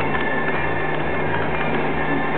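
Electric potter's wheel running with a steady hum while it spins.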